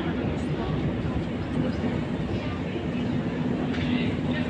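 Metro escalator running while being ridden downward: a steady mechanical rumble with a low hum underneath.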